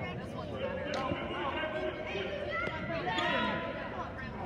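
Indoor basketball game: voices calling out in the gym, with a basketball bouncing on the hardwood court.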